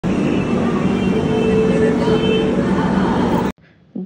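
Railway platform ambience beside a standing passenger train: a steady din of crowd voices and train noise, which cuts off suddenly about three and a half seconds in.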